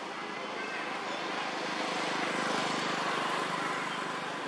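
A distant engine passing by, a steady wash of noise that swells to its loudest a little past halfway and then fades, with faint voices in the background.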